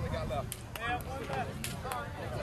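Indistinct voices of people talking nearby, with no clear words, and a few short sharp clicks scattered through.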